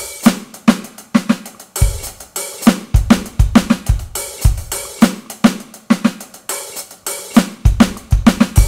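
Electronic drum kit playing a slowed-down modern jazz groove. The hi-hat runs in groups of three with open-hi-hat accents, over snare hits and a steady scatter of bass-drum kicks.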